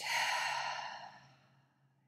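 A woman's big breath out: one long audible exhale that starts strongly and fades away over about a second and a half.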